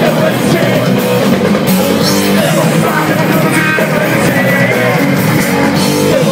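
Hardcore punk band playing live and loud: distorted electric guitars, bass and drums.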